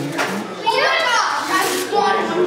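Children's voices talking and chattering over one another.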